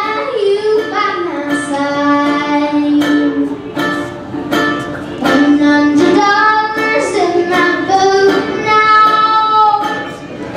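Live country band: a young girl singing long held notes over strummed guitar and a hand drum beaten in a steady rhythm.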